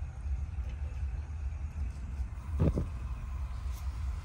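Wind buffeting the microphone outdoors: a steady low rumble, with one short dull thump a little past halfway.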